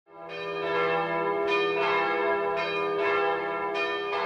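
Bells ringing, struck again and again so that their tones overlap and ring on.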